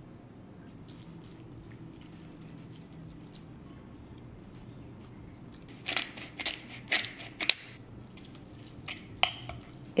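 Hand pepper mill twisted over a bowl: a quick run of about five gritty grinding crunches lasting about a second and a half. A couple of light clicks of a fork against a glass bowl follow near the end.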